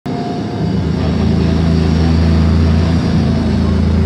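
A steady, low drone from amplified electric guitars and bass through the stage PA, swelling about half a second in, with crowd voices underneath.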